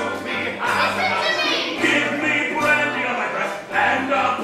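Several male voices singing a stage-musical number together over orchestral accompaniment, in a live theatre recording.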